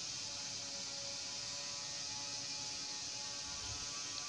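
Steady hiss with a faint electrical hum underneath: the recording's background noise, with no distinct sound standing out.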